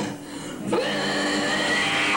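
Live noise-rock band playing a sustained, distorted electric-guitar drone with high ringing overtones. After a brief drop at the start, the sound slides up about two-thirds of a second in and holds steady.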